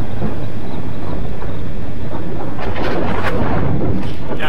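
Wind rushing over the microphone of a motorcycle riding at road speed, with the steady low drone of the 2005 Suzuki GSX-R1000's engine underneath. The rushing swells louder about two and a half seconds in.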